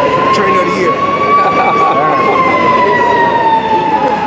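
A siren wailing in one long, slow tone that rises a little, then falls away, over background voices.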